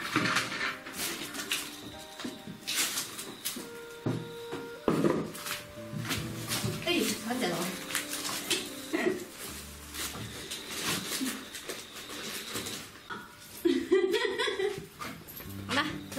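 A woman talking in short remarks over background music.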